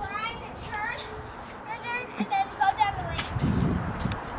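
A kick scooter rolling across a concrete driveway, with a few sharp knocks a little before the end, among high-pitched children's voices.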